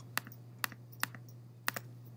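A few scattered clicks of computer keys, irregularly spaced, with two close together near the end, over a steady low hum.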